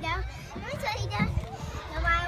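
Children's voices at play: short unworded calls and chatter coming and going, loudest at the very start and again about a second in.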